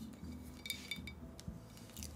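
Fingernails tapping and clicking on a glass tequila bottle (Hijos de Villa tequila plata): a few light, irregular taps, some with a short glassy ring.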